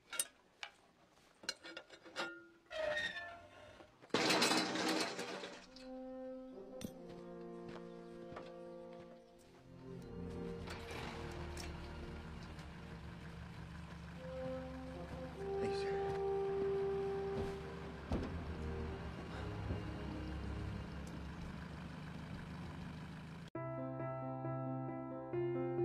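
Metal clicks and knocks at a flagpole's base, then a loud crash about four seconds in as the pole comes down. An orchestral film score with French horn and brass follows, cutting off suddenly near the end into a different, piano-led music track.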